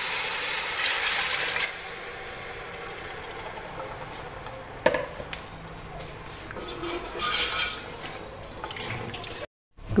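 Pandan water being poured into a hot steel pot of fried onions and spices: a loud rush of liquid for the first second and a half or so. Then quieter liquid sounds as it is stirred with a wooden spoon, with a single knock about five seconds in.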